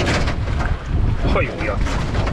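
Wind rumbling on the microphone, with a man's short grunt of effort about a second in as he steps into a transparent kayak.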